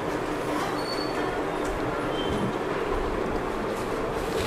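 Steady, even rushing background noise with no clear rhythm or pitch.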